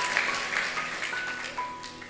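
Congregation clapping and dying away, over soft, held single notes from a keyboard that step slowly between pitches.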